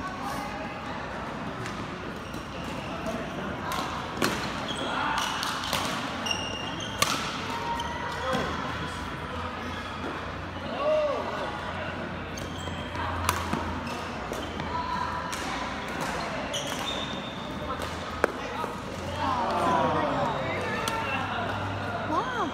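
Badminton rackets hitting a shuttlecock during a doubles rally: a few sharp hits at irregular gaps of a few seconds. Voices chatter in the background of a large hall.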